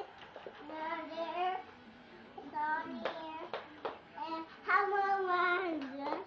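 A toddler's high, sing-song vocalizing in three drawn-out wordless phrases, with a few sharp clicks between them.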